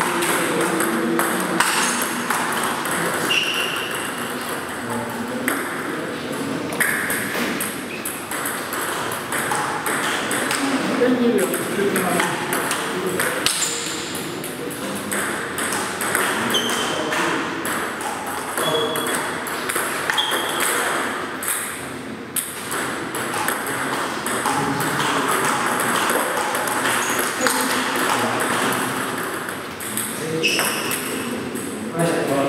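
Table tennis ball repeatedly pinging off the bats and the table during rallies, in quick runs of sharp clicks.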